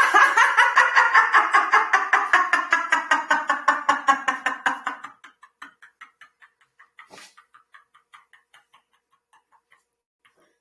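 A woman laughing on one long exhale, a laughter yoga exercise of laughing until the lungs are empty. Rapid, even 'ha-ha' pulses, about four to five a second, are loud for about five seconds, then fade into breathless, whispered pulses as her air runs out, stopping about nine seconds in.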